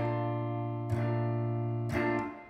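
Semi-hollow electric guitar strumming a B-flat major 7 chord in a jazzy blues progression, struck three times about a second apart with the chord ringing between strokes.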